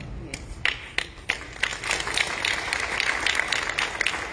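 Audience clapping: a few scattered claps that grow into steady applause about a second and a half in.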